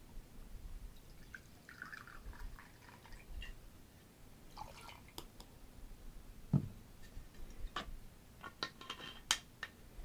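White rum poured from a bottle into a small jigger, a faint trickle, followed by several light clicks and one knock of glass and bottle being handled and set down.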